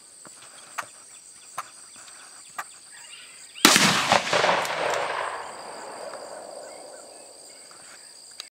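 A single rifle shot from a .204 Ruger rifle about three and a half seconds in, its report echoing and dying away over about two seconds. Beneath it, a steady high buzz of insects and a few sharp ticks.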